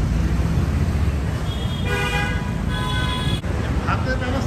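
A vehicle horn honks twice, a long toot and then a shorter one, over a steady low rumble.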